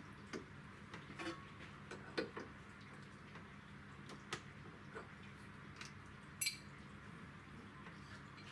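Light metallic clicks and clinks, a handful at irregular moments, as a cutting tool is fitted into a mini mill's spindle collet by hand, over a faint steady low hum.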